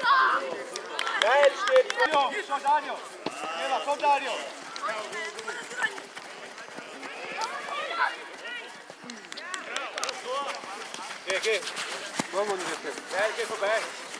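Many high-pitched children's and adults' voices shouting and calling over one another across a football pitch, with no clear words. There is a loud burst of shouting right at the start, and a few short sharp knocks in the second half.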